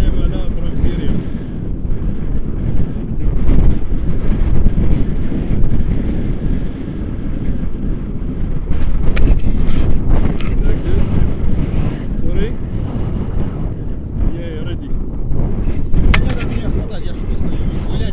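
Wind buffeting an action camera's microphone: a loud, gusting low rumble that rises and falls, with a few sharp clicks partway through.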